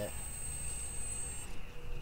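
An RC airboat's electric motor and propeller running with a steady high whine, which cuts off about one and a half seconds in as the throttle is let go.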